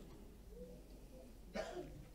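Quiet room tone with one short throat or breath sound, about one and a half seconds in.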